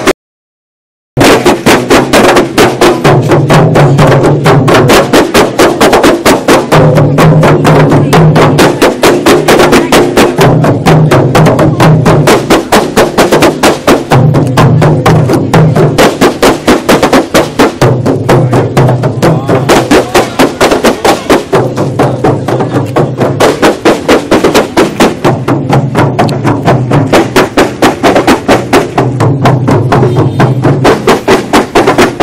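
A group of kompang (Malay hand-held frame drums) played fast in interlocking rhythm, a dense stream of hand strikes with a deeper sound swelling about every four seconds. The sound drops out completely for about a second at the start.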